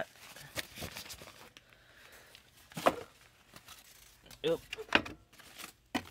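Objects being rummaged through and moved by hand among workshop clutter: scattered light knocks and rustles, with sharper knocks about three seconds in and again near five seconds.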